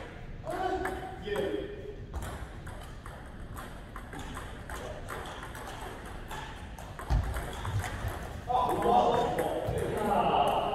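Table tennis balls clicking sharply off bats and tables in quick rallies, with several tables in play at once. There is a low thud about seven seconds in.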